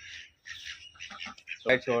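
Caged birds calling faintly: short, scattered chirps and squawks.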